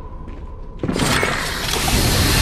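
Film sound effect of a booby trap going off: a sudden crack just under a second in, then a loud, continuous rushing hiss as a jet of white vapour or dust bursts from the tomb floor.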